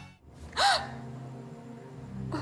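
A woman's sharp gasp of shock about half a second in, over a low, steady music chord.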